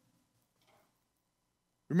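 A pause in a man's sermon speech: near silence, with his voice trailing off at the start and starting again just before the end.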